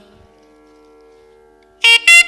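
A faint, steady drone of held tones, then near the end a loud reed wind instrument comes in with a sustained note, in the manner of a nadaswaram at a Tamil temple ritual.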